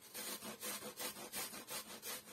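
Onion being grated on a metal box grater, a steady run of rasping strokes, about three or four a second.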